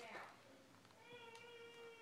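Near silence broken by a faint, steady, high-pitched pet cry about a second long in the second half.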